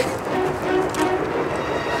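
Rolling, clattering noise of a donkey-drawn cart and a marching column on a dirt road, under background score music with short held notes.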